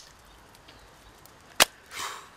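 A single sharp slap about one and a half seconds in, with a fainter click at the start and a brief rustle after the slap.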